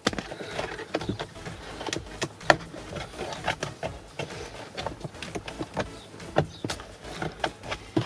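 Plastic lower dash trim panel of a 2009 Ford Edge clicking and creaking as it is tugged by hand, its retaining clip still holding. Irregular small clicks and knocks, the sharpest just after the start and about two and a half seconds in.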